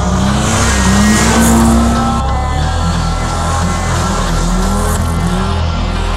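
Drift car's engine revving up and down with tyre squeal in the first two seconds, under background music.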